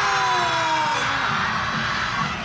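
The close of a yosakoi dance performance: several held voices or tones slide slowly down in pitch and die away about a second in, over a steady crowd noise.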